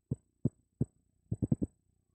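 Handheld microphone being tapped with a finger as a mic check: about seven short, dull thumps, the last four in a quick run near the end.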